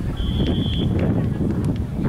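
A referee's whistle blown once, a short steady high blast of under a second, over wind rumbling on the microphone.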